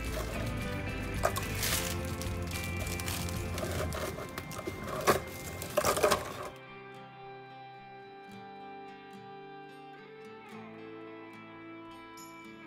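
Background music throughout. During the first half, graham crackers are handled out of their plastic wrapper and dropped into a blender jar, giving a few sharp clatters around five to six seconds in. After that only the music remains.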